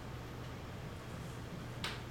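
A steady low room hum with a single sharp click near the end.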